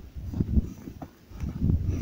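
Footsteps in snow: low, muffled thuds in two short clusters with a brief lull between them, along with a low rumble of wind or handling noise on the microphone.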